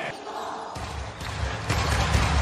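A basketball being dribbled on a hardwood court, a steady run of bounces, with a low rumble joining in about three quarters of a second in.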